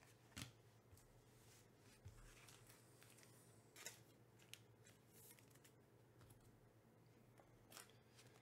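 Faint handling of baseball trading cards: a few soft snaps and brushes as cards are flicked through and a handful is set down on a stack, over quiet room hum.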